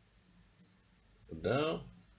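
A couple of faint clicks, then a man's short wordless voice sound, a hesitation with its pitch bending, lasting about half a second from a little past halfway.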